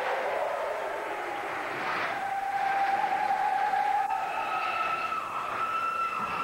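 Basketball game noise in a high school gym: a steady wash of crowd and court sound, with a few held tones, a lower one about two seconds in giving way to two higher ones near the end.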